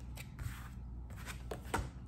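Tarot card deck being shuffled by hand, a few soft card flicks and slides.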